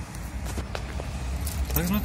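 A key turning in a door's lock cylinder, with a few sharp clicks and the other keys on the ring jangling.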